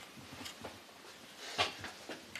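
Quiet workshop with faint handling of small wooden pieces, and a brief scrape or knock about a second and a half in.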